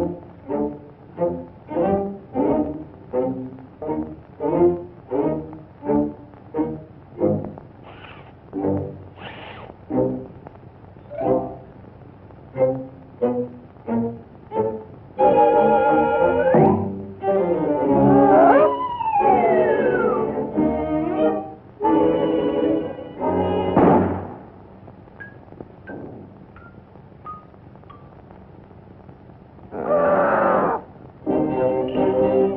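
Early-1930s cartoon jazz score. Short staccato band notes come about twice a second for the first half, then give way to a louder full-band passage with a long downward slide. Near the end the music turns quieter, with a few short high pips, each a little lower than the last.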